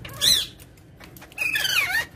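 Rose-ringed parakeets calling: a short shrill squawk just after the start, then a longer wavering call that falls in pitch near the end.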